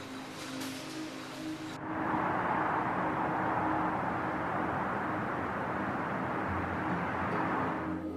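Soft background music with long held notes; about two seconds in, a steady rush of distant city traffic comes in under it and carries on to the end.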